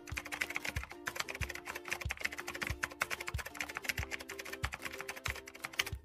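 Rapid keyboard-typing clicks, a sound effect for text being typed out, over background music with a steady beat.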